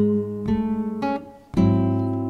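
Flamenco guitar strummed: a few chords struck in quick succession, a brief break about a second and a half in, then one full chord struck and left ringing.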